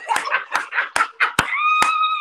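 Hands clapping quickly, about four or five claps a second, with laughter. From about one and a half seconds in, a high held squeal of delight joins the clapping.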